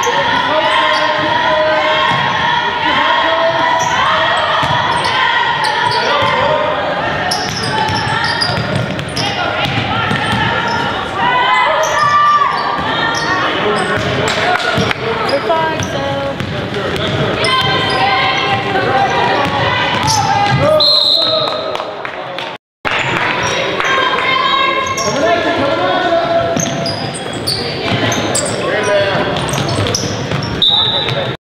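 A basketball bouncing on a hardwood gym floor during play, with players and spectators calling out in a large, echoing gym. A short high whistle sounds about 21 seconds in.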